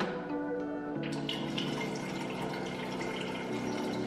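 Background music over water running from a countertop water dispenser into a stainless-steel electric kettle, starting about a second in.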